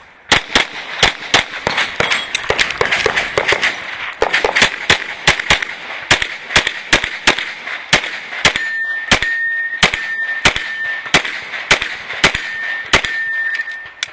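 A competition race pistol firing rapidly, dozens of sharp shots in quick strings of about two or three a second. A steady high tone sounds over the last five seconds.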